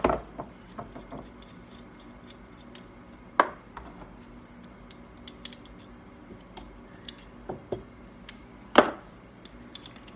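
Light clicks and knocks of a metal carburettor and its small brass parts being handled on a towel-covered workbench, with three louder knocks: at the start, about three and a half seconds in, and near the end.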